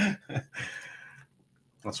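A man's short laugh that trails off into breathy laughter and fades out, followed by a brief pause and a spoken word near the end.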